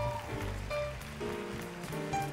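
Live jazz band playing: a line of short melody notes over a walking bass and drums, with a haze of cymbals.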